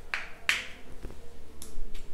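Plastic squeeze bottle of ultrasound gel being squeezed, spluttering out gel with air in a few short squirts.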